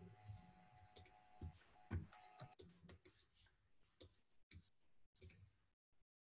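Near silence over a call line, with a few faint, scattered clicks; the loudest comes about two seconds in.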